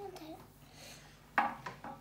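A brief voice at the start, then a sudden short rustle and a few light clicks from small plastic toy parts being handled on a tabletop, about a second and a half in.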